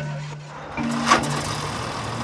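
Cartoon soundtrack: background music holding low notes over the rumble of a cartoon excavator moving on its tracks, with a single knock about a second in.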